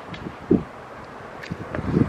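Wind buffeting the microphone outdoors, a steady low rumble and hiss, with one short low sound about half a second in.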